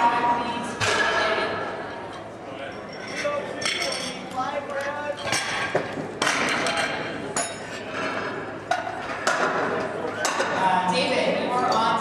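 Indistinct voices talking in a large hall, with a few sharp metallic clinks of iron barbell plates and collars being handled on the platform.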